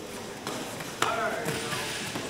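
Sharp smack about a second in, with a softer one about half a second in, from children's taekwondo sparring, amid indistinct voices echoing in a gym hall.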